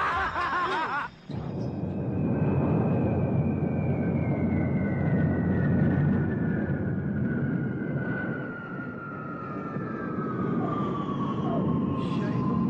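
Jet airliner passing low on its landing approach: a steady engine rumble with a high whine that slowly falls in pitch. It opens with men laughing loudly, cut off about a second in.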